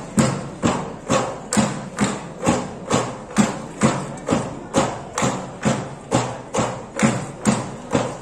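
Bamboo poles struck together and knocked on the wooden crosspieces on the floor for a bamboo dance. It is a steady, even rhythm of a little over two knocks a second, each with a short hollow ring.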